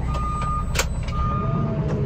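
Diesel engine of a JCB TM telescopic loader running, heard from inside its cab, with its reversing alarm sounding two half-second beeps. A single sharp knock comes a little under a second in.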